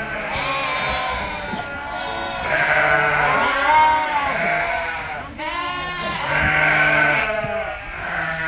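Sheep bleating, a string of long calls with wavering pitch, over soft background music.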